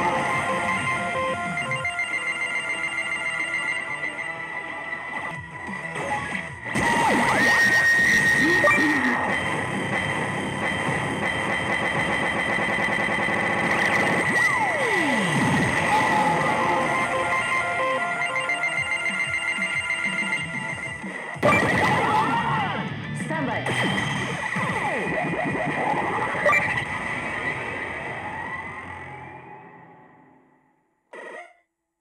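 A pachislot machine's game music and electronic effect sounds, with a steady high ringing chime over busy music and swooping effects. It fades out near the end.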